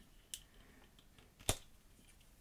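Two small clicks from a plastic Super7 Mouser action figure as fingers work at its jaw, which will not open. The second click, about a second and a half in, is the sharper and louder.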